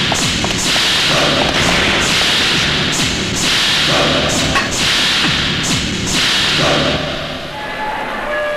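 Film sound effects of a mounted machine gun firing in repeated short bursts, roughly one a second, that stop a little before the end.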